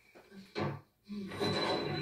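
Television drama soundtrack heard through the TV's speakers in a small room: a short knock about half a second in, then from about a second in a man's strained, breathy cry as he is pinned down in a struggle.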